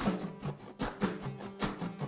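Acoustic string band playing a calypso rhythm: strummed guitar chords on a steady beat, between sung lines.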